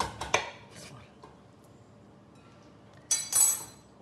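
A silicone spatula clicking twice against a glass bowl of melting chocolate at the start, then a quiet stretch of stirring, then a short hissy scrape about three seconds in.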